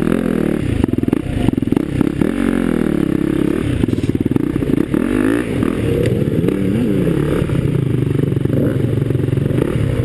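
Enduro dirt bike engines running close by, idling and revving in uneven rises and falls, with some rattling clatter.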